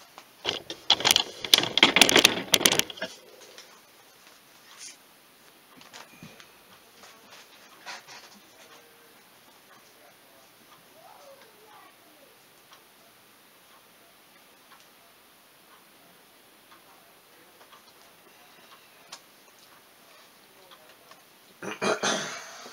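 Vinyl decal and its backing being handled at a workbench: a couple of seconds of loud crinkling and rustling about half a second in, then quiet with a few faint taps and ticks.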